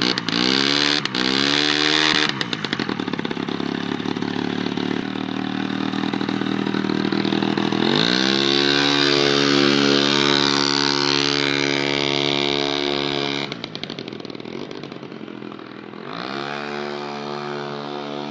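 Yamaha PW50's small two-stroke single-cylinder engine revving in three quick blips, then running at steady revs. It rises again about eight seconds in and holds there, drops back lower and quieter around thirteen seconds, and revs up once more near the end.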